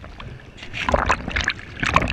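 Water splashing and sloshing right at the microphone in irregular surges, strongest about a second in and again near the end.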